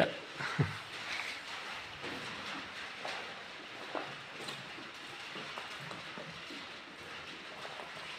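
Faint background noise with a few soft knocks and rustles, the clearest a short thump less than a second in.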